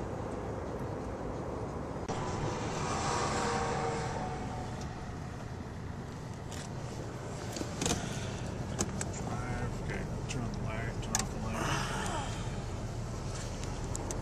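Steady low rumble heard from inside a car stopped at the roadside, with highway traffic going by; one vehicle swells past and fades about two to five seconds in. Later come a few sharp clicks and faint, muffled voices.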